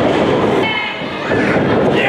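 Live crowd noise in a small hall during a wrestling match, with a brief shrill, high-pitched shout about half a second in.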